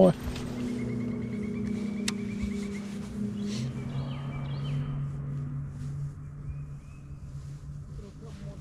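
Steady motor hum on a bass boat. It drops to a lower pitch about three and a half seconds in and then holds. A bird chirps briefly a few times.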